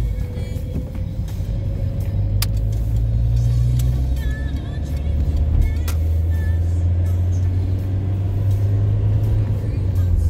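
A car's engine and road noise heard from inside the moving car's cabin: a steady low drone whose pitch steps down about halfway through.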